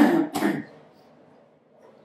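A man clears his throat twice in quick succession in the first half-second, followed by faint room tone.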